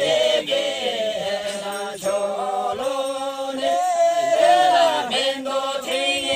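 A group of men and women singing a folk song together, voices held on long notes in a chant-like unison.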